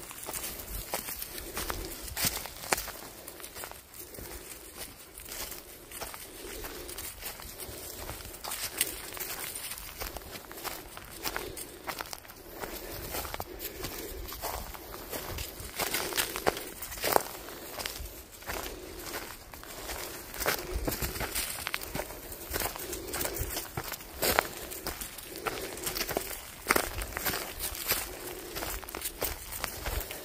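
Footsteps of a hiker and a leashed dog walking along a dirt forest trail covered with leaf litter: an irregular, continuous run of steps with sharp clicks and crackles through it.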